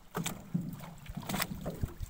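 Small wind-driven waves lapping against a moored wooden boat's hull and the shore, with a few sharp slaps of water, over a low, uneven rumble of wind on the microphone.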